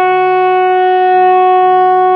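Saxophone holding one long, steady note.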